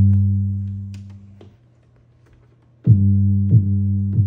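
Samples played back from an Akai MPC 60: a low, sustained bass note with drum hits fades out over the first second and a half. After a short near-silent gap, a new bass note with drum hits starts sharply about three seconds in.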